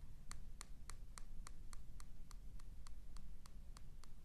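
Faint, even ticking, about three ticks a second, over a low steady room hum.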